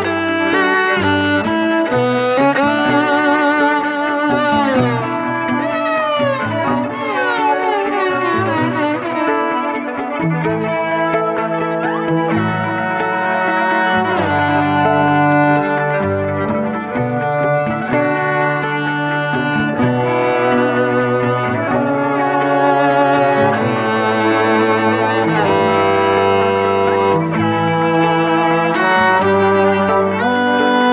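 Bowed violin played solo, with quick descending sliding runs a few seconds in, over a lower part held in long notes.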